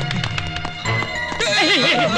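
Film background music with a steady percussive beat, and about one and a half seconds in a horse whinny sound effect: a loud, quavering call that wobbles and falls in pitch.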